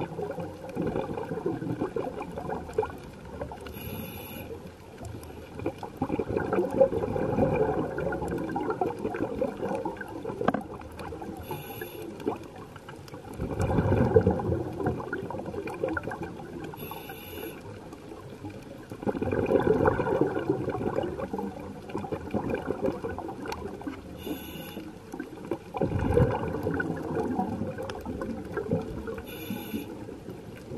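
Scuba diver breathing through a regulator underwater: a short hiss on each inhale, then a louder rush of exhaled bubbles, repeating about every six to seven seconds, four or five breaths in all.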